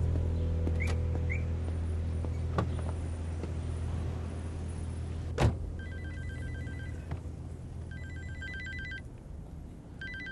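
A mobile phone ringing inside a car: a trilling electronic ringtone in two bursts of about a second each, starting about six seconds in and beginning again at the end. Just before it, a single sharp thump of the car door shutting.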